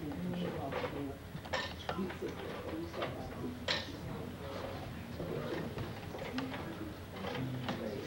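Faint voices of people talking in a small room, with no clear lead speaker, and a couple of sharp clicks about one and a half and nearly four seconds in.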